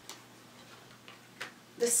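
Two light clicks of tarot cards being handled as a card is drawn from the deck, about a second and a half apart.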